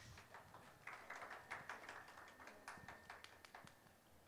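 Brief, soft applause: scattered hand claps from a few people, thickening about a second in and dying away just before the end.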